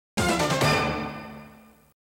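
Short musical logo sting for a TV show's opening title: a chord that starts suddenly and fades away over about a second and a half.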